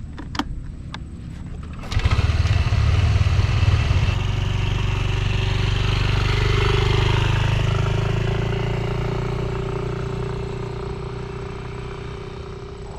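Motor scooter being started: a click or two from the ignition, then the engine catches about two seconds in and idles briefly. The scooter then pulls away, its engine note rising and then fading steadily as it rides off.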